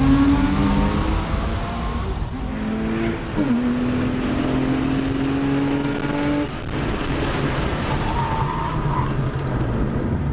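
Car engine revving hard under acceleration. Its pitch climbs through each gear, drops at a gear change about three and a half seconds in, climbs again and falls away about six and a half seconds in.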